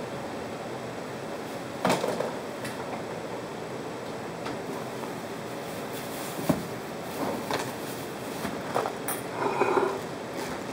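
Kitchen handling noises over a steady background hiss: a couple of sharp knocks of things set down on the counter, about two seconds in and again past the middle, then rustling near the end as the towel and a packet are handled.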